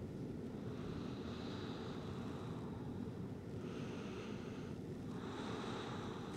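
Soft, slow breaths through the nose, one about halfway through and another near the end, over a steady low hum of room tone.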